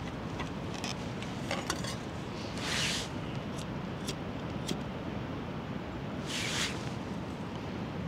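Faint clicks and clinks of small camp-stove gear being handled: a fuel bottle being capped, a lighter clicked a few times around the middle to light a small alcohol burner, and a stainless windshield pot stand set down over it. Under it a steady background hiss with a few soft rushes.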